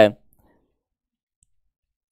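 A man's voice finishing a word, then near silence broken only by a couple of very faint ticks.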